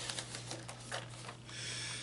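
Cardboard toy packaging being handled: a run of light clicks and taps, then a brief papery rustle near the end.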